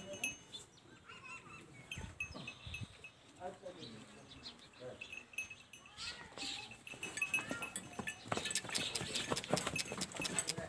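Livestock-yard sounds: scattered short animal calls and high chirps, with clicking and rattling that grows denser over the last three seconds.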